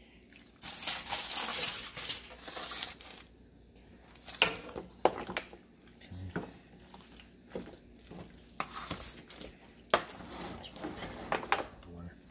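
A metal ladle and spoon mixing thick cheese sauce into cooked corkscrew pasta in a disposable aluminium foil pan: crinkling of the foil, scraping and clinks of the utensils, and squishing of the sauced pasta. The scraping runs for a couple of seconds, followed by scattered sharp clicks and scrapes.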